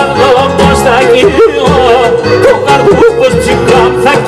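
Live Pontic Greek folk music: a man sings with bending, ornamented vocal lines over a bowed Pontic lyra, a daouli bass drum and a keyboard, with a steady held tone underneath.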